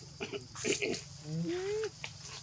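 A young macaque calling: a few short grunts, then one pitched coo that rises and falls, near the end.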